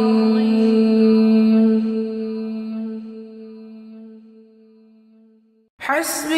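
A single chanted vocal note held steady and slowly fading away over about five seconds. Just before the end, the next chanted phrase starts abruptly.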